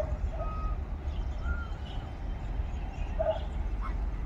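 Outdoor ambience with a steady low rumble, a few faint short chirps, and one louder short animal call a little over three seconds in.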